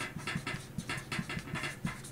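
Chalk scratching on a blackboard in a quick run of short strokes as characters are written.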